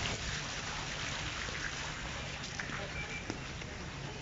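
Steady city street background noise, a low rumble and hiss of traffic and air, with a few faint small clicks.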